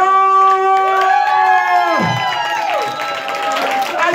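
Loud singing into a microphone in long held notes; the first note is held about two seconds and then falls away, and further held notes follow. A crowd cheers and claps along underneath.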